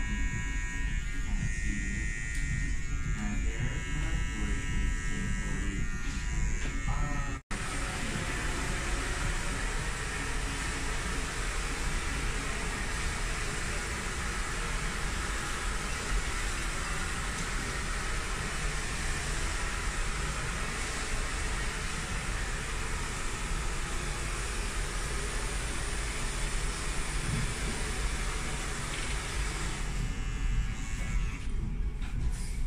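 Electric hair clippers and a T-blade trimmer buzzing as they cut short hair and shave a line design into the side of the head. About seven seconds in the sound drops out for an instant, then carries on as a steadier, denser buzz.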